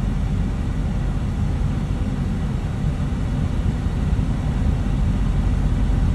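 Truck engine idling, a steady low rumble heard from inside the cab.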